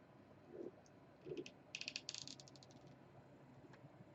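Quiet handling of a hot glue gun on fabric: two soft bumps, then about a second of rapid faint clicking and rattling as the gun is worked.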